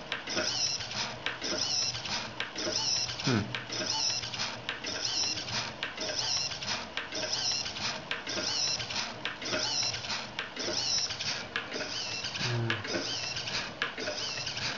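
Hobby servo rocking a wire gyro-wheel track in a fast, regular cycle, each stroke a short high whir and a click, repeating a little under twice a second, with the spinning gyro wheel running on the metal rails.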